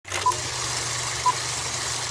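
Old film countdown leader sound effect: a short, high beep once a second, twice here, over a steady hiss and low hum.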